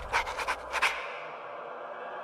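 Trailer sound design: a quick run of about five short, breathy pulses over a low rumble in the first second, then a quiet hush.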